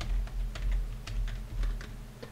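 Typing on a computer keyboard: a quick, irregular run of keystroke clicks, about five or six a second.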